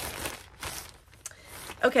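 Packaging crinkling as it is handled, in a few short rustles, then a woman says "Okay" near the end.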